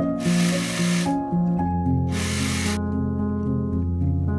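Background music with a serger (overlock machine) running twice over it, each run about a second long; the last second is music alone.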